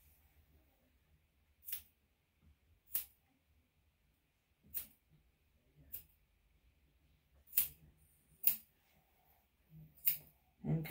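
Grooming scissors snipping the fur around a dog's paw: about six separate sharp snips, one to two seconds apart, the last two loudest.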